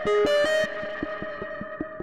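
Instrumental intro music: plucked notes struck at the start and again about half a second in, then ringing and fading over a light, steady ticking beat.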